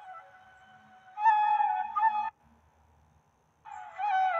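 Slow, gentle flute music: a held note fading away, a short melodic phrase about a second in, then a pause of about a second before the flute comes back near the end.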